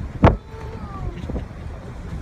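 Steady low rumble on the deck of a boat, with one sharp knock about a quarter of a second in, the loudest sound.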